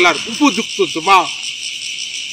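Steady, high-pitched drone of insects in a forest. A man's voice speaks over it for about the first second.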